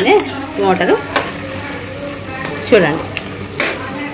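Pieces of goat tripe (boti) sizzling in their gravy in an aluminium pot while a spatula stirs them, with two sharp knocks of the spatula on the pot, one about a second in and one near the end.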